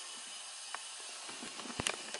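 Kettle being put on the stove: a steady low hiss with a faint click, then a sharper, louder click near the end as the kettle and stove are handled.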